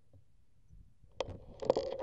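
A bicycle setting off on a dry dirt trail. After about a second of near quiet comes a sharp click, then crackling clicks from the tyres and drivetrain on the dirt and a steady hum as it starts to roll.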